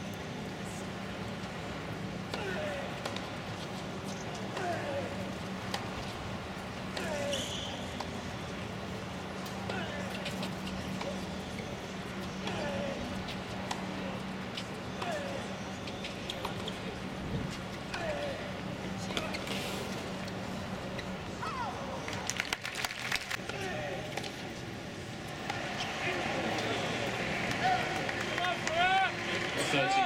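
Tennis stadium crowd ambience: scattered spectator voices over a steady low hum, with a short run of sharp knocks of tennis ball strikes about two-thirds of the way in. The crowd chatter grows louder near the end.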